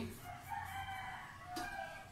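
A rooster crowing once, faint, the call lasting about a second and a half and ending on a lower held note.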